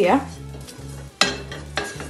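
A wooden spatula scrapes and knocks against a stainless-steel frying pan as tamarind is dry-roasted. There are two sharper knocks in the second half.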